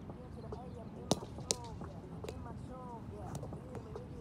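Two sharp slaps of a Spikeball being hit during a rally, about a second in and half a second apart, followed by a few fainter taps; voices run underneath.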